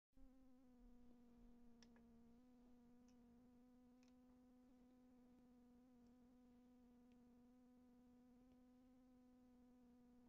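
Near silence: a faint, steady buzzing hum holding one pitch, with a few tiny clicks.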